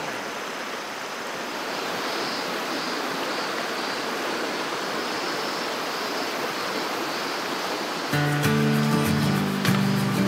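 Steady rush of a shallow mountain river flowing over rocks. About eight seconds in, background music with a beat comes in over it and is the loudest sound from then on.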